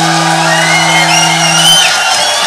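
An unplugged rock band's closing note, held and then cut off just before the end, while a studio audience cheers, shouts and whistles over it.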